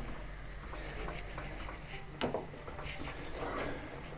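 Faint kitchen sounds of flour being tipped into a pot of boiling water on a gas burner and then stirred with a wooden spoon to make a dough, with one sharp knock about two seconds in.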